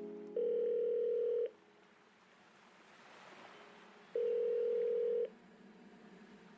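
Telephone ringing tone heard on the line: two long, steady, low beeps, each about a second long, about three seconds apart.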